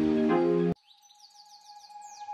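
Background music that cuts off abruptly about three-quarters of a second in. A new track then fades in quietly with a steady high tone and a quick run of falling, bird-like chirps.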